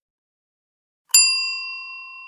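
A single bright bell ding, the sound effect for clicking a notification bell, struck about a second in and ringing as it fades.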